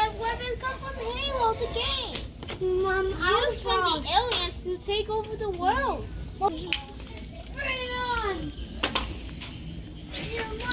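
Children's voices, high-pitched and wordless, calling and playing with sing-song rises and falls in pitch, with a few short clicks mixed in.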